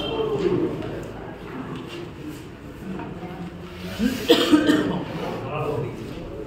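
Murmured talk of people around the table, with a loud cough about four seconds in.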